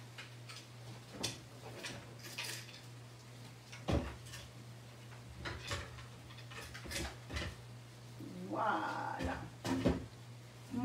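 Wooden tabletop easel being set back up and a canvas stood on it: scattered wooden knocks and clatter, the sharpest about four seconds in and several more a couple of seconds later. A short vocal sound comes near the end.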